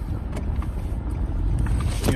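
Steady low rumble of a running car heard from inside its cabin, with a few faint ticks.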